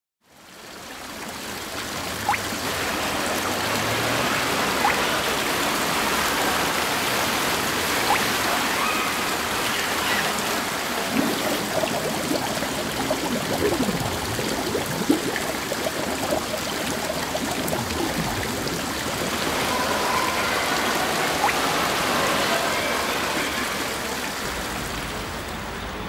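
Steady rushing water, like a fountain or pool water jets, fading in over the first couple of seconds.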